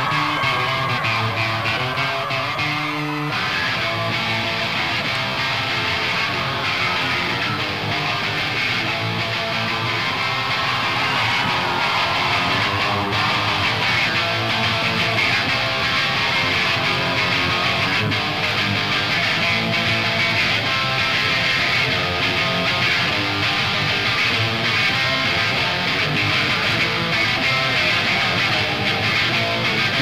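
Electric guitar played by an audience member taking his turn in an on-stage guitar contest, playing continuously.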